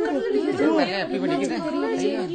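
Several high-pitched voices talking over one another: crowd chatter.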